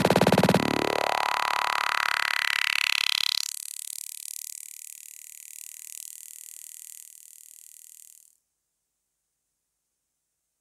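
Techno track closing out a DJ mix. The kick drops out and a rising filter sweep strips away the bass over about three seconds. The thin high end that remains fades out and stops about eight seconds in.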